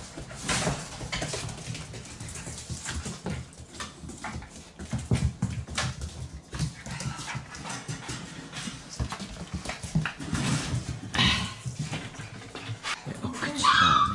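Shiba Inu puppy whimpering and yipping in short cries during rough play with a cat, over a run of scuffling and scratching sounds on a hard floor.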